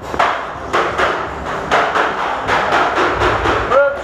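A rapid, even run of short, sharp pops and thuds, about four a second, during a tagball game.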